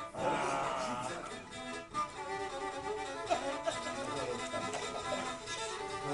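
Black Sea kemençe, the small three-stringed bowed fiddle of the Turkish Black Sea coast, playing a quick, busy melody.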